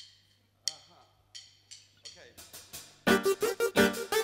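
A drum-kit count-in of sharp metallic ticks, three evenly spaced and then quicker ones, leads into the full band starting the song loud and rhythmic about three seconds in.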